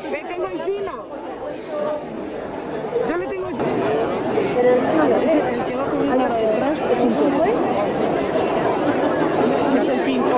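Crowd chatter: a few voices at first, then, about three and a half seconds in, many people talking at once in a dense, louder babble that carries on.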